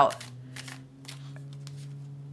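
A deck of tarot cards being shuffled by hand: soft, scattered card rustles and light flicks, over a steady low hum.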